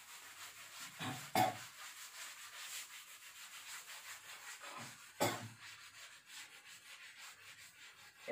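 Cloth wiping chalk off a blackboard in quick back-and-forth rubbing strokes, with two louder knocks, one near the start and one about midway.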